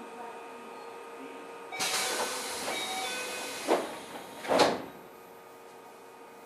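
Compressed air hissing from a Keio 7000 series commuter car's pneumatic equipment. A sudden loud hiss starts about two seconds in and lasts nearly two seconds, ending in a sharp peak, and a second short burst of air follows about a second later.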